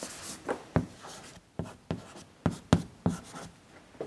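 Chalk writing on a blackboard: a string of irregular sharp taps and short scratching strokes as letters are written.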